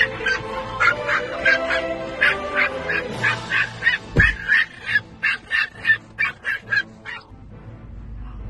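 Pomeranian barking angrily in a rapid run of short, high-pitched yaps, about three a second, stopping about seven seconds in. There is a low thump about four seconds in, and background music plays throughout.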